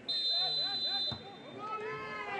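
Referee's whistle blown once for about a second to signal kick-off, with players' voices calling over it. A dull knock, typical of the ball being kicked, follows just as the whistle stops.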